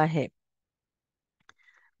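A woman's voice finishes a word, then near silence with a single faint click about a second and a half in.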